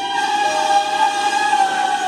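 Red Meitetsu electric train pulling out of the station: running noise with several steady, held tones over it, a lower tone joining about half a second in.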